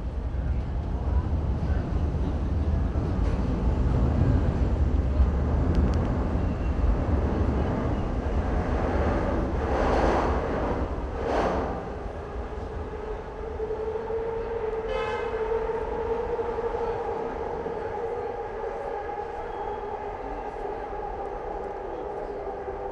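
Elevated subway train on the steel El structure, most likely the Market-Frankford Line: a heavy rumble for the first half, a couple of louder swells around the middle, then a steady high whine that holds through the rest.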